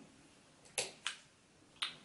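Three short, sharp clicks in a quiet room, the first two close together and the third near the end, from makeup brushes being handled and swapped.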